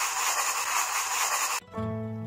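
Maracas shaken in a continuous dry rattle that stops suddenly about a second and a half in. Background music with held notes comes in right after.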